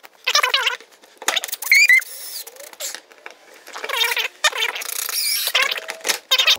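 Cordless drill/driver running in four short bursts, driving bolts through a plastic transducer shield into a kayak hull, with high, wavering squeals as the bolts bite.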